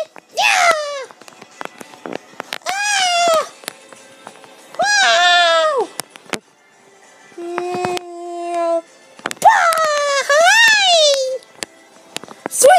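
A child's high-pitched voice making a run of drawn-out wordless cries and squeals, each rising then falling in pitch, with a steady held note about eight seconds in.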